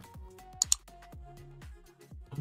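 Faint background music under small plastic clicks and rustles of a lavalier microphone's clip and cable being handled, with one sharper click a little over half a second in.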